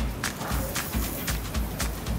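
Background music with a steady low beat, over irregular sharp crackles and spits from lamb sweetbreads going into hot oil in a pan.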